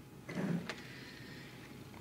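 Bible pages rustling briefly as they are handled and turned, with a light tap just after, about half a second in.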